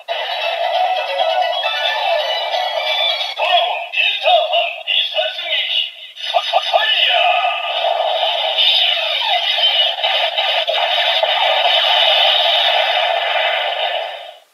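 Kamen Rider Saber DX toy belt's small built-in speaker playing its electronic transformation audio: a synthesised song with spoken and sung announcer lines, thin and without bass. It dips briefly about six seconds in, then carries on until it stops just after the end.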